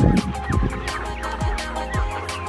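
Village chickens calling as they crowd round to be fed, under background music with a steady beat.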